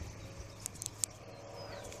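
Quiet outdoor background with a few faint sharp clicks around the middle and one short, high, falling whistle near the end.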